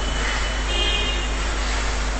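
Steady background noise with a low hum in a pause between sentences of a man's talk, and a faint brief tone about halfway through.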